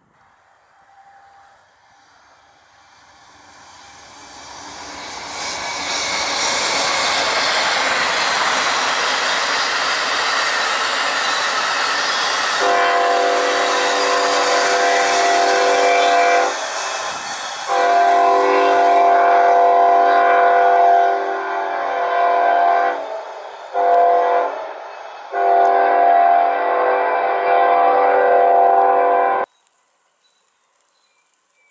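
Amtrak passenger train headed by GE P42DC diesel locomotives approaching and passing at speed, a rising rush of wheel and rail noise. The locomotive's multi-chime air horn then sounds two long blasts, a short one and a long one, the pattern blown for a grade crossing, while the Superliner cars roll by. The sound cuts off suddenly near the end.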